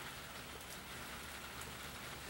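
Faint, steady background hiss with a low hum and a few faint ticks.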